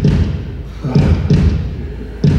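Heartbeat sound effect: low double thuds, lub-dub, repeating about once every 1.2 s.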